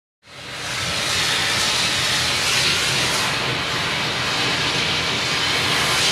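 Bed-bug steamer's steam head releasing a steady, loud hiss of steam onto a towel, starting a moment in and building quickly to full flow.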